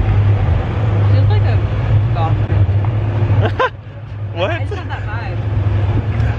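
Golf cart driving along: a steady low drone with a haze of running noise, and brief bits of people's voices over it.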